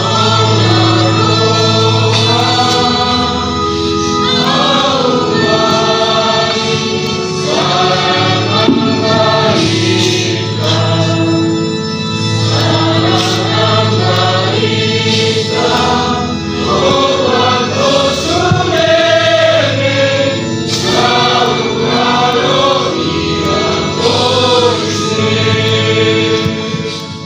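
A choir singing a psalm, several voices together in a slow hymn over steady held low notes.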